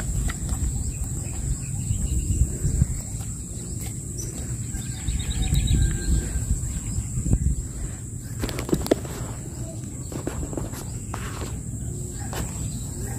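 Outdoor background noise: a low rumble on the microphone under a steady high-pitched whine, with a few light clicks about two-thirds of the way through.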